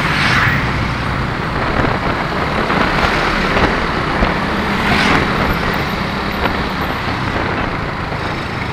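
Steady road and traffic noise heard while riding a motorcycle through busy street traffic of motorbikes and angkot minibuses, with a continuous low rumble. A vehicle rushes past close by about five seconds in.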